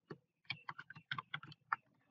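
Computer keyboard keys being typed: one keystroke, a short pause, then a quick irregular run of about a dozen key clicks as a password is entered.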